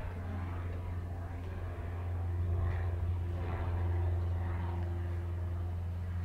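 A steady, low machine hum, with a faint higher tone entering about halfway through.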